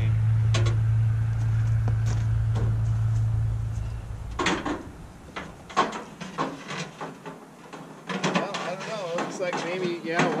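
A vehicle engine's low, steady drone fades out about four and a half seconds in. After it come scattered knocks and muffled voices.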